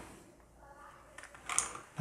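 Quiet handling sounds: a faint rustle of a soft cloth pouch, then a few light clicks from a 60% mechanical keyboard's keycaps about a second and a half in, as the keyboard is slid into the pouch.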